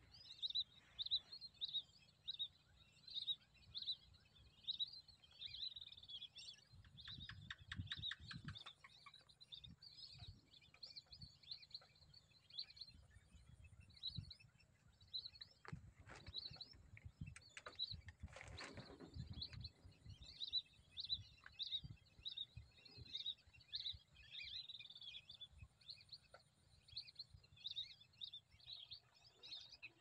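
Lesser whistling ducks calling: short, high whistles repeated about once or twice a second throughout, with a few low rumbles in between.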